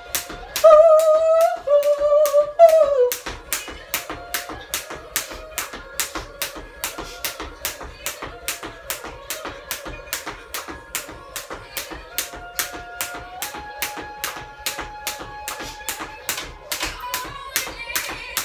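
Jump rope slapping the floor in a steady rhythm, about three times a second. A woman sings a few long notes at the start, and music with held tones plays under the slaps.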